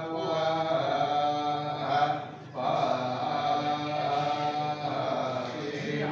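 A male Hindu priest chanting mantras in long, held tones, with one short break about two seconds in.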